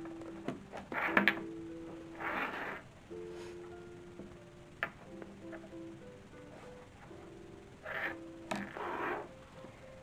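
Background music, a slow melody of held notes. Over it come a few short rustles and light clicks from hands working cotton cord and fabric.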